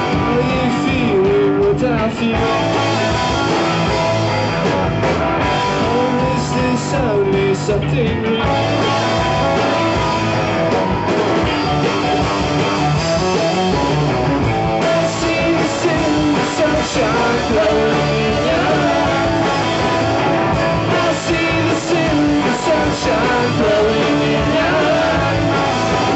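Live psych-pop rock band playing a song, with electric guitars and a sung lead vocal, loud and continuous.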